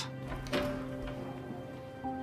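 Background film score of held, sustained notes, with a new note coming in about half a second in.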